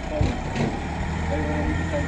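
A steady low engine hum, like a vehicle or machine idling, under a man's speech.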